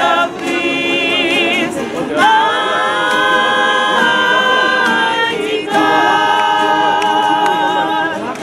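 A gospel choir singing a Christmas carol, with long held notes, some with vibrato, and brief breaks between phrases.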